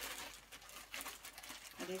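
A clear plastic bag crinkling and rustling as the bagged stack of newspaper comic sheets inside it is handled, with a few sharper crackles.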